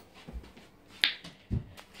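A single sharp click about a second in, followed about half a second later by a duller knock, over quiet room tone.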